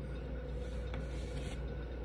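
Quiet room tone: a faint, steady low hum and hiss with no speech or music.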